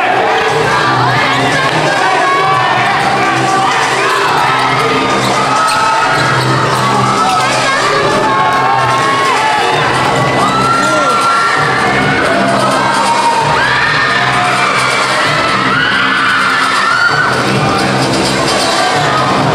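A large crowd of basketball spectators shouting and cheering continuously in a gym, many voices overlapping, with music playing underneath.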